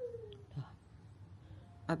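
A cat gives a single short, faint meow that falls in pitch at the very start. A man's voice begins just before the end.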